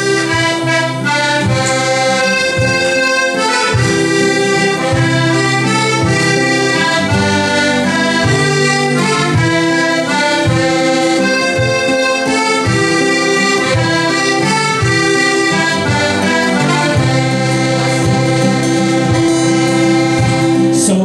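Live folk band playing an instrumental opening: piano accordion and button accordion carry the melody over strummed acoustic guitar and a regular bodhrán beat.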